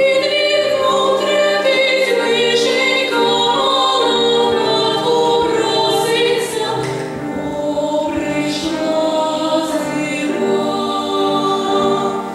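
A girls' vocal ensemble singing a slow lullaby in several-part harmony, on long held notes.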